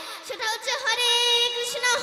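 A young girl singing kirtan, a Bengali devotional song, into a microphone. Her voice slides between notes and then holds one long note through the second half.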